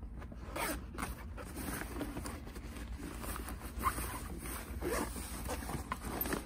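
The zipper on the outer compartment of a Babolat Pure Drive 12-pack tennis racket bag being pulled open in several short, uneven tugs.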